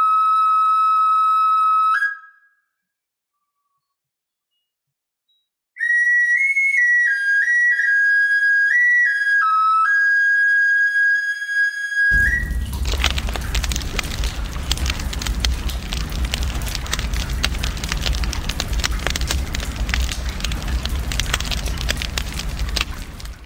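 A high-pitched flute holds one long note, stops for a few seconds of silence, then plays a short melody of stepping notes. About halfway through, the flute gives way to a rushing noise with a deep rumble in it.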